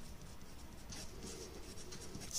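Faint scratching of a pen writing on paper, a few short strokes as figures are written.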